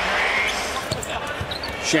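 A basketball being dribbled on a hardwood court, a few short strikes over steady arena crowd noise that is louder in the first half second.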